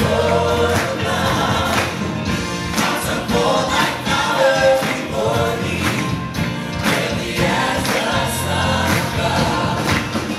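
Live amplified vocal group, male and female voices singing together into handheld microphones, over a band with electric guitar and drums keeping a steady beat.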